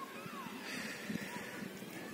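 Faint rustle of willow leaves and twigs as a hand moves through a branch, over quiet outdoor background with a few faint chirps.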